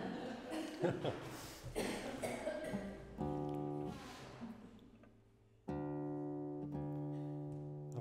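Nylon-string classical guitar being tuned: a string is plucked and left to ring a few times from about three seconds in, each note fading slowly, after some soft handling noise.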